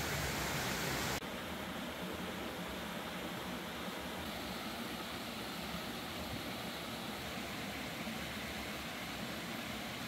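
Steady rush of a shallow rocky stream flowing over stones. About a second in it turns slightly quieter and duller, then holds steady.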